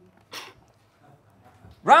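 A quiet pause with one brief faint noise about a third of a second in. Near the end, a man's voice loudly starts announcing "Round..." with a sharply rising pitch.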